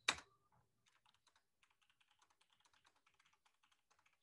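Faint typing on a computer keyboard: one louder click right at the start, then a quick, even run of light keystrokes lasting a couple of seconds as a short note is typed.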